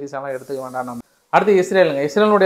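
A man talking to camera. About a second in, the sound drops to dead silence for about a quarter second, then the voice comes back.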